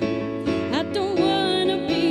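A woman singing a slow song live, her voice sliding between notes over sustained keyboard chords and low held notes.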